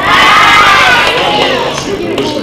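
A roomful of children's voices shouting together, loud and all at once, then tailing off after about a second and a half: the children answering a greeting called to them from the stage.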